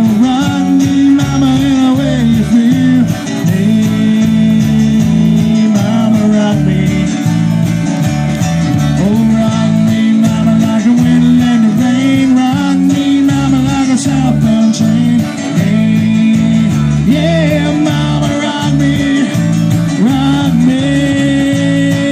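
Live band playing: electric and acoustic guitars over bass guitar and drums, amplified through stage speakers.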